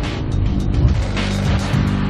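Motorcycle engines on the move, mixed with a background music track.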